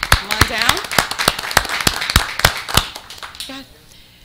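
Audience applause: a few people clapping, the claps sharp and distinct, with voices underneath. It dies away about three and a half seconds in.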